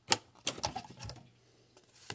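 Trading cards being flipped through in the hand, with a quick run of crisp clicks and sliding scrapes of card edges in the first second or so. The sharpest click comes right at the start.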